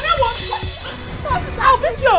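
Women yelling and shrieking without words as they scuffle, with cries that rise and fall sharply, over background music.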